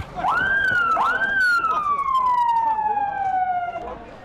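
Emergency vehicle siren rising quickly in pitch twice, then sliding slowly and steadily down as it winds down.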